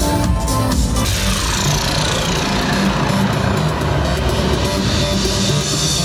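Electronic dance music from a live DJ set, played loud over PA speakers. About a second in, a downward sweep falls through it over a couple of seconds, and a hiss builds near the end.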